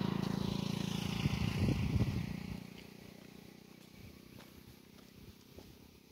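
An engine running steadily, with a rougher patch about a second and a half in. It fades away or stops about two and a half seconds in, leaving a faint outdoor background.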